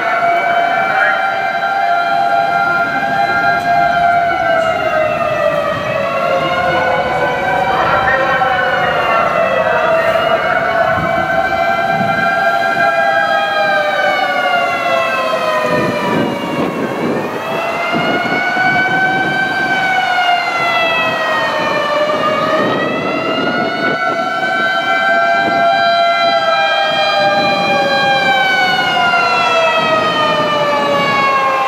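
Several fire engine sirens wailing at once, each slowly rising and falling in pitch out of step with the others, over a low rumble of city traffic.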